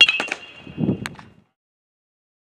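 Metal baseball bat striking a ball: a sharp crack with a high ring that lasts about a second. A few lighter knocks and a dull thump follow, and the sound cuts off suddenly about a second and a half in.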